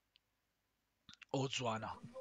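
About a second of quiet, then two faint clicks in quick succession and a person's voice starting to speak.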